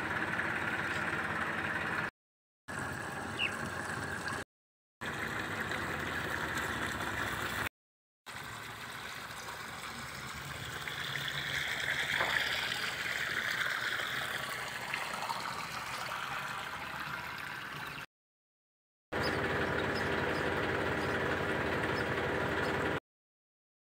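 Water running from a hose pipe into the flooded soil basin around a tree, over a steady motor hum. The sound cuts out abruptly several times where short clips are joined.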